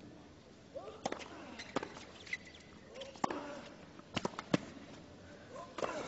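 Tennis ball being struck by rackets and bouncing on a hard court in a rally: sharp, short hits at an uneven pace of roughly one a second, with faint voices between them.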